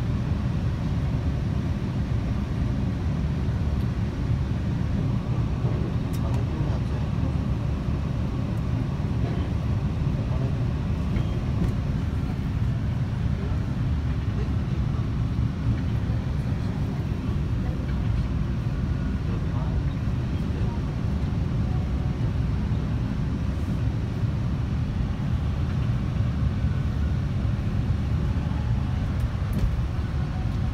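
Subway train running, heard from inside a crowded car: a steady low rumble with passengers' voices faint beneath it.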